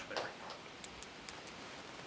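Quiet meeting-room tone with a few faint, sharp ticks about a second in.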